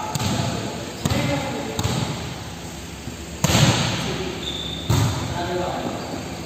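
Volleyball being struck and bouncing on a gym floor during play: a series of sharp smacks, the loudest two about three and a half and five seconds in.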